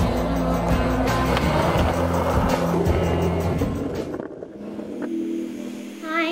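Skateboard rolling on concrete with sharp clacks from the board, over a backing music track with steady bass notes. About four seconds in, both drop away to a quieter passage.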